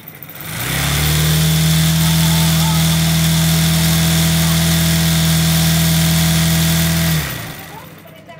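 Electric sewing machine running at a steady high speed, stitching through fabric. It speeds up about half a second in, runs evenly for about six seconds, then winds down and stops near the end.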